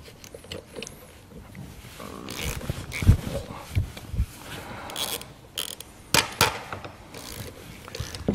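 Steel spanners working the nuts on a trailer coupling head's bolts as they are tightened: scattered metallic clicks and clinks, a few sharper knocks from about two seconds in.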